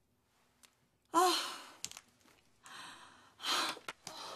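A woman's heavy, voiced sigh about a second in, followed by two loud breaths near the end.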